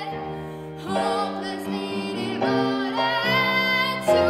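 A girl's solo singing voice, held notes with vibrato, accompanied by a grand piano; a new phrase begins about a second in.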